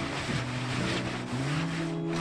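A cloth rubbing across a wooden bench in repeated wiping strokes, a soft swishing that swells and fades with each stroke, wiping off pine pollen. Background music with held notes plays underneath.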